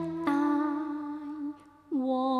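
Cantonese opera singing: a long held sung note with a slight waver. About 1.5 s in it breaks off briefly, and the next note starts near the end.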